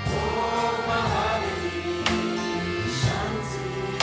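Voices sing a mantra chant together over a live acoustic band of harmonium, acoustic guitars and cello. Steady held chords run under the singing, with a couple of strummed chords about halfway and three-quarters through.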